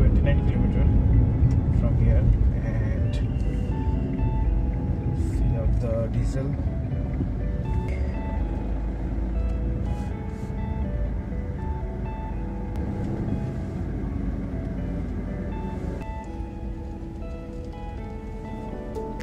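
Background music with held, stepping notes over a low, steady rumble of a car on the road; the rumble gradually eases through the second half.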